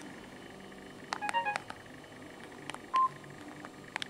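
Samsung GT-E1200M feature phone's keypad: plastic keys clicking as they are pressed, with a quick run of short electronic key tones stepping in pitch about a second in and a single short beep about three seconds in.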